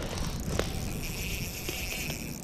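Fishing reel working as a hooked trout is fought through an ice hole: a couple of light clicks, then a thin steady whir in the second half, over a low steady background noise.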